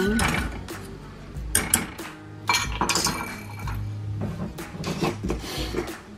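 Metal wire whisk stirring in a stainless steel saucepan, with irregular sharp clinks of metal on metal, thickest a couple of seconds in.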